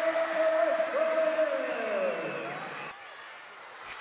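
A long, drawn-out "yeah" held for about two seconds, sliding down in pitch at the end, over arena crowd noise after a made basket. The crowd noise then settles to a lower murmur for the last second.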